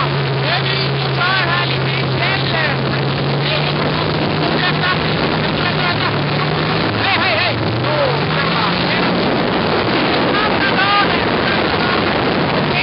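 Snowmobile engines running at a steady speed while riding over snow, with wind on the microphone. About seven seconds in, the drone shifts as one engine tone rises in pitch.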